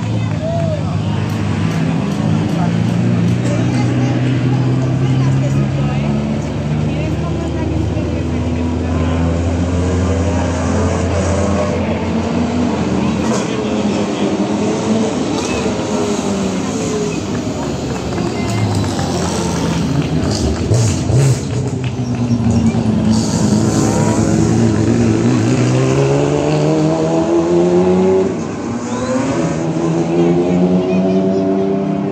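Rally car engines as the cars come down a tight hairpin one after another, their pitch holding, then falling and rising as they slow for the bend and accelerate away. A brief cluster of sharp cracks comes about two-thirds of the way through.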